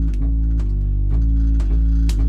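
Live keyboard music: sustained low chords struck about twice a second.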